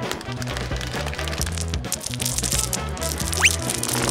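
Background music over the rattle and clatter of hard candies (Skittles) being poured and spilling onto a wooden floor, many small clicks; a quick rising whistle-like sound effect about three and a half seconds in.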